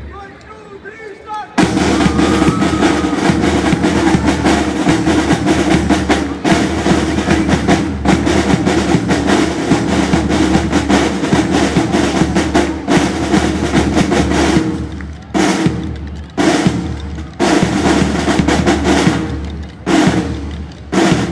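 A line of marching snare drums played together by a drum corps. After a quieter opening of about a second and a half they come in loud with a dense, sustained pattern, then break into short stop-start phrases in the last few seconds.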